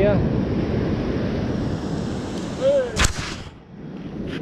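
Waves breaking on the beach and wind buffeting the microphone, with a brief voice call about two and a half seconds in and a single sharp knock just after three seconds.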